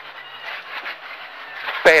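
Quiet, muffled cabin noise of a Škoda rally car: a faint low engine note and road noise while the car slows hard for a bend.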